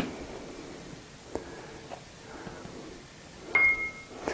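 Faint handling sounds as arrowroot starch is tipped from a small bowl into a plastic food processor bowl. There is a sharp click at the start, a lighter click about a second and a half in, and a short ringing clink near the end.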